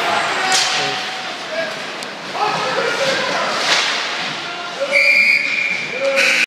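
Ice hockey referee's whistle blown in one long steady blast about five seconds in, over rink noise of skates scraping the ice and players' voices.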